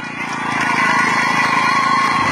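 A motor running steadily, its low drone slowly getting louder.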